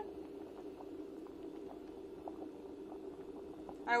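Pot of spaghetti boiling hard on an induction hob: a steady low drone with faint scattered pops. The boil has a deeper sound, which the cook takes as the sign that the pasta has soaked up water and is almost done.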